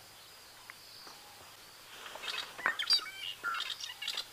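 Wild birds calling: after a quiet first half, a quick series of short chirps and upward-sweeping notes, over a faint steady high-pitched drone.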